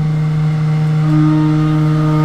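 Benchman VMC 5000 CNC vertical mill running, its spindle and cutter facing the top of a nylon block under flood coolant. It makes a steady machine hum made of several constant tones, one of which grows stronger about a second in.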